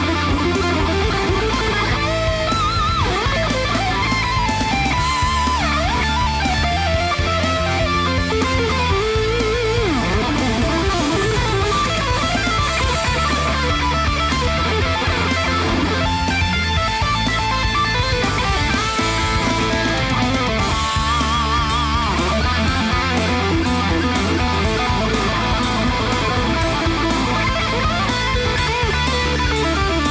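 Jackson JS11 electric guitar played through an amp: a metal lead line with bends and vibrato over steady low notes that change every couple of seconds.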